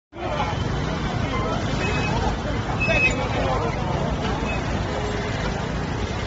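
Street crowd of marchers with many voices talking over one another, over steady traffic noise and a low rumble.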